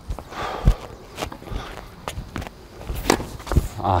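Tennis ball strikes and bounces on an outdoor hard court: about five short, sharp knocks, the sharpest about three seconds in, with the player's footsteps between them.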